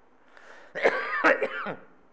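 A man clearing his throat: a harsh burst of two quick, loud rasps about a second in, trailing off with a falling voiced sound.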